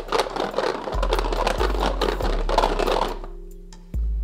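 A set of hexagonal Špalíčky oracle cards being shuffled in their box: a dense, irregular clatter for about three seconds that then dies away, over background music with low held notes.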